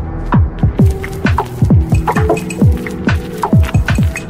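Electronic music: deep kick drums whose pitch drops sharply, about three a second, over sustained synth tones and scattered clicks.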